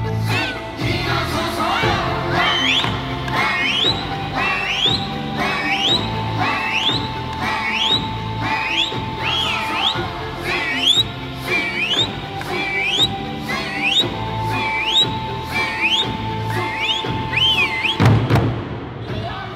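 Okinawan Eisa music: large barrel drums beaten in a steady rhythm under singing, with short rising calls repeating about once a second from about two seconds in.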